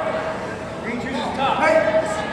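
Men's voices calling out, with one long held shout near the end.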